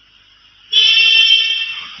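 A loud, steady, high-pitched tone starts about two-thirds of a second in and holds for over a second.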